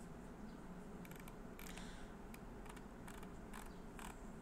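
Faint, irregular clicking from computer controls as CT image slices are paged through, over a low steady hum.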